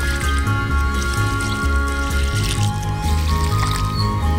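Background instrumental music: held notes over a bass line that steps from note to note about every half second.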